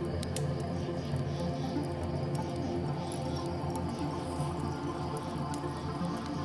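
Soft piano music playing over forest ambience: a wood fire crackling with scattered sharp pops, and crickets chirping.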